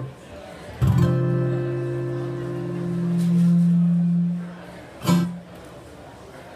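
Amplified acoustic guitar: a chord strummed about a second in rings for several seconds, one low note swelling louder before it fades, then a brief second strum near the end.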